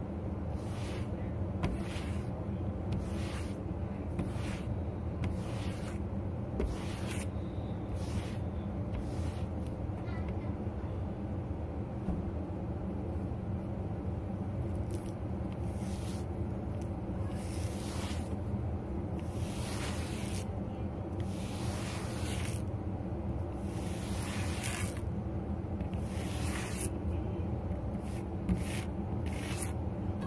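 A hand brush being drawn again and again through dyed faux fur to straighten its pile, one brushing stroke roughly every second, with a steady low hum underneath.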